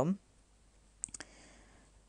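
A quick cluster of three or four small, sharp clicks about a second in, over faint room tone.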